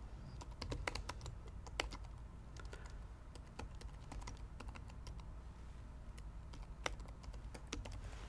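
Typing on a computer keyboard: a run of quiet, irregular key clicks over a faint low hum.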